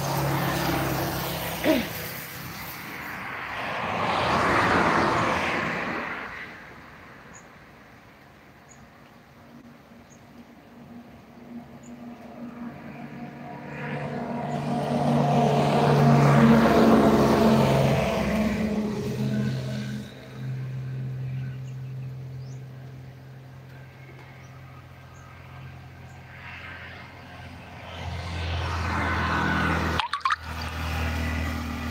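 Road traffic passing one vehicle at a time: a motorcycle goes by, swelling and fading a few seconds in, then a small truck with a droning engine, loudest around the middle, and a motorized tricycle approaching near the end.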